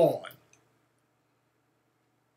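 A man's voice finishing a word, a faint click, then near silence.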